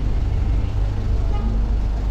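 Low, steady rumble of a city minibus engine running right alongside.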